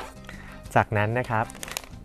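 A sheet of origami paper being handled and folded on a table, with light paper crinkling, over steady background music. A voice speaks briefly about a second in.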